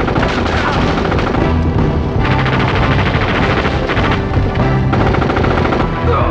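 Rapid automatic rifle fire in long bursts over a loud action-film score with a steady low bass. The heaviest firing comes about two seconds in and again near the end.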